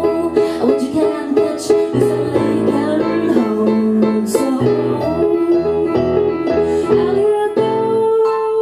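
Stage keyboard played live with a piano sound, a steady stream of repeated chords and single notes.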